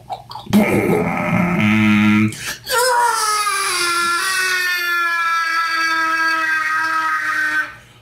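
A man's voice imitating a dinosaur: a short rough growl, then one long, high, wailing cry that dips in pitch and then holds for about five seconds before cutting off near the end. It is a vocal stand-in for a mother T-Rex's horrified, painful yell.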